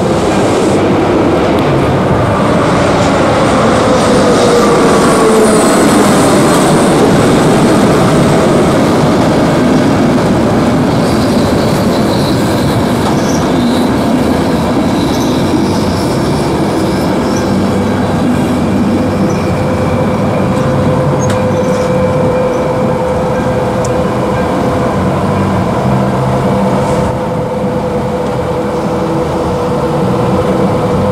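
A regional passenger train running past over a level crossing, wheels on the rails with some squeal, while the crossing's electronic warning bell rings. A falling pitch in the first several seconds marks the train approaching and passing.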